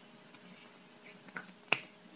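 A single sharp finger snap near the end, with a softer click a moment before it, over faint room hiss.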